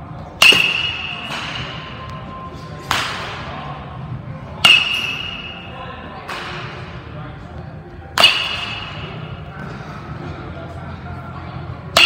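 Metal baseball bat hitting baseballs: four sharp pings a few seconds apart, most with a brief metallic ring, with fainter knocks in between.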